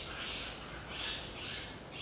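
Short, raspy, hissing animal calls repeating about every half-second to second, three in all.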